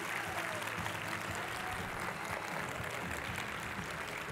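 Audience applauding steadily after a speech, many hands clapping.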